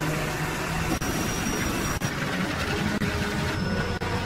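Aerial tramway cable machinery running: large cable wheels and drive gear turning with a steady mechanical rumble and hum.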